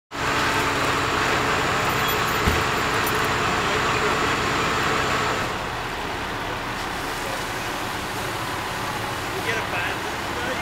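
A vehicle engine running steadily, with indistinct voices. A single knock sounds about two and a half seconds in, and the running noise drops a little about five and a half seconds in.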